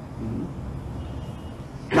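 Low steady background rumble in a pause between a lecturer's words, with a brief faint murmur of voice a fraction of a second in.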